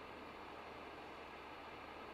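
Faint room tone in a pause in speech: a steady low hiss with a low hum underneath.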